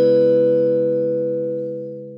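Closing logo jingle: the last note of a short three-note chime rings on as a held chord and slowly fades out.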